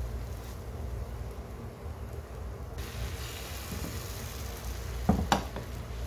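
Beaten egg frying in a hot non-stick pan: a faint sizzle that brightens abruptly about halfway through, over a steady low hum. A couple of sharp clicks come near the end.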